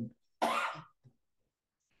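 A presenter's single short throat-clearing cough at the microphone, about half a second in, then silence.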